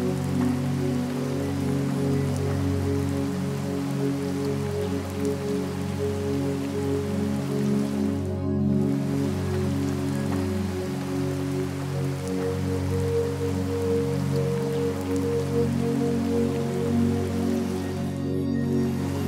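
Soft ambient music of slow, held low notes layered with steady rain noise. The rain cuts out for an instant about eight and a half seconds in.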